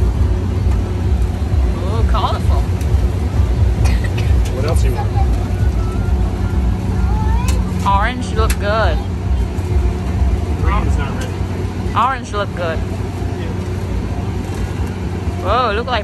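A steady low hum and rumble of running machinery, with voices of people around breaking in now and then, clearest about 2, 8 and 12 seconds in.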